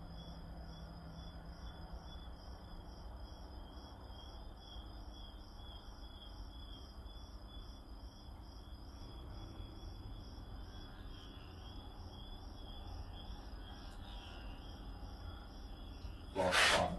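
Crickets chirping faintly and steadily, about two to three chirps a second, over a low steady hum.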